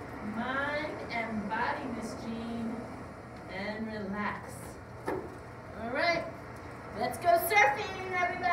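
A woman's voice talking, indistinct, with louder talk near the end.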